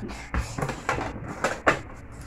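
Melamine plastic plates being handled and stacked: about five light clacks and knocks as the plates are set down against each other.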